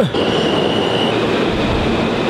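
New York City subway train running into the station, its cars rumbling steadily with a high wheel squeal that holds for about a second, then drops a little in pitch and goes on fainter.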